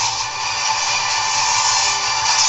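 Movie trailer sound mix: a steady, dense rushing noise over a low rumble, with music faint beneath it.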